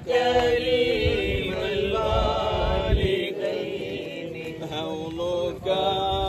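A man's voice chanting a melodic devotional recitation in long, held phrases, with short pauses about halfway and near the end.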